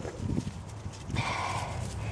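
Soft knocks and rustling of strawberry leaves as a hand moves through a potted plant's foliage, with a brief burst of rustling about halfway through.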